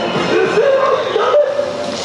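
Yosakoi dancers shouting calls together, their voices sliding up and down, with one cry held for nearly a second in the middle, over crowd noise.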